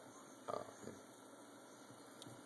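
Mostly quiet: a man's short, hesitant 'um' about half a second in, over a faint steady hiss.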